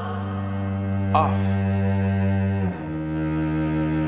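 Music: slow, sustained low bowed strings like cello and double bass hold one chord, then move to another about two and a half seconds in. A brief higher sound comes about a second in.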